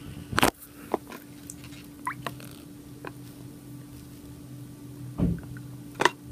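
Scattered drips and small splashes of water in a bowl as a hand handles a toy submarine, with a louder slosh about five seconds in. A faint steady hum runs underneath.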